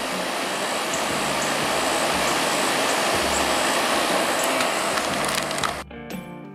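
Window air-conditioner unit running close by, a steady rush of fan and airflow noise over a low hum; it cuts off abruptly just before the end.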